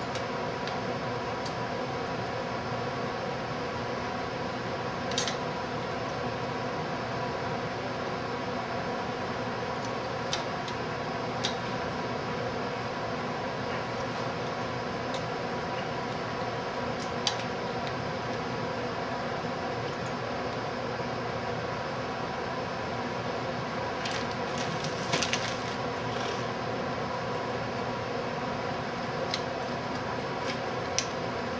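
Steady background hum and hiss with a few sharp plastic-and-metal clicks as a stock CPU heatsink and fan is set onto the processor and clipped to the socket's retention bracket, with a short cluster of clicks about 25 seconds in.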